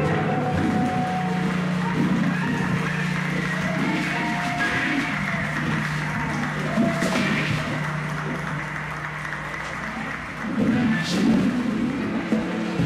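Live rock band: electric guitars and amps hold a low sustained drone with scattered notes, slowly fading as a song winds down. Audience noise with some clapping rises about ten seconds in.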